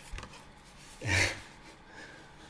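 Faint rustling and light clicks of a cardboard envelope being opened and handled, with a short breathy vocal sound, a gasp or laugh, about a second in.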